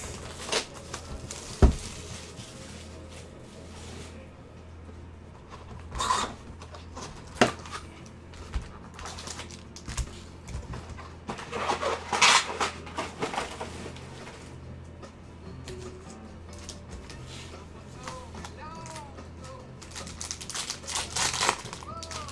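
Handling of a Panini Prizm basketball card box and its foil-wrapped packs: scattered knocks and several bursts of crinkling and rustling as the box is opened and the packs are laid out, over a steady low background hum.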